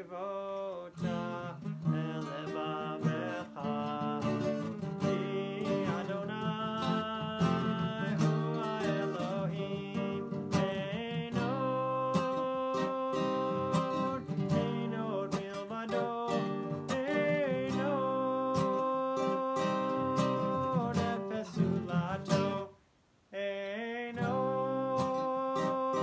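A man singing a melody while strumming an acoustic guitar. The sound breaks off briefly near the end, then resumes.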